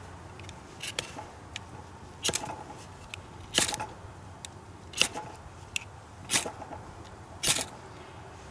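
A steel striker scraped down a small Exotac Nano Striker ferrocerium rod six times in quick short strokes, about one every second and a half.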